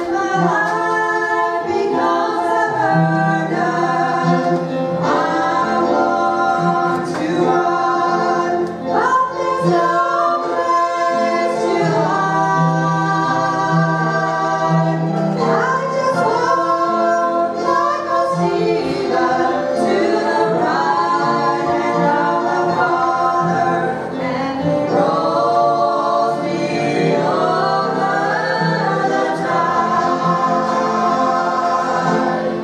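A mixed vocal group of two women and two men singing a gospel song in harmony into microphones, several voices together over held low notes.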